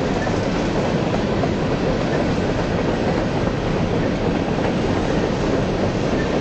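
Freight train cars rolling past, a steady noise of steel wheels running on the rails.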